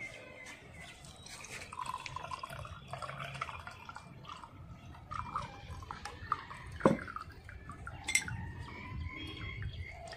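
Liquid poured from a steel pot through a plastic strainer into a glass, trickling and dripping. Two sharp knocks stand out, about seven and eight seconds in.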